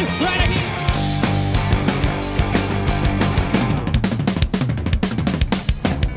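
Live rock band playing, the drum kit to the fore with kick and snare hits over sustained bass and guitar; a dense run of drum hits comes about four seconds in.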